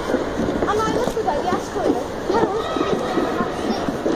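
Voices and chatter, with a short laugh about two seconds in.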